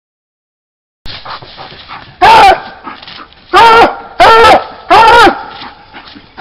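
Coonhound barking treed at the base of a tree, baying its quarry: four loud barks, the first about two seconds in, each rising and falling in pitch.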